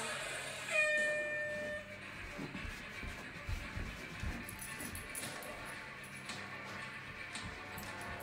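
A countdown timer's start buzzer: one loud steady tone lasting about a second, starting just under a second in, followed by background music.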